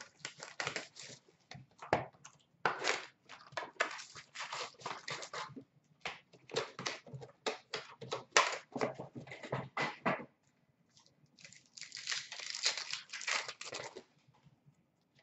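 Trading-card packs being ripped open and handled, the foil wrappers crinkling and tearing in a quick run of short, irregular rustles, with a longer stretch of crinkling near the end.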